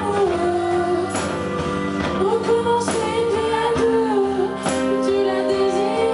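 Live pop-rock song: a woman sings long held notes into a microphone over acoustic guitar and band accompaniment.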